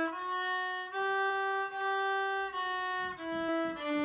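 Solo fiddle walking up the first notes of the D scale on the D string (open D to third-finger G) and back down, bowed smoothly without stopping between notes. The top note is held for about a second and a half before the line steps back down.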